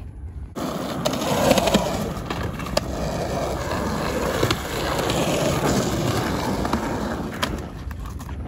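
Skateboard wheels rolling over a concrete skatepark bowl: a steady rolling noise that starts about half a second in and eases off near the end, with a few light clicks and knocks along the way.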